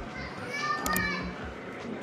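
Background voices, children's among them, chattering and calling out.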